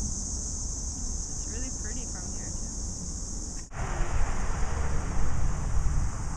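Outdoor ambient noise: a steady high hiss over a low rumble, with a few faint wavering chirp-like sounds. A little past halfway it cuts abruptly to louder, fuller rumbling noise like wind on the microphone.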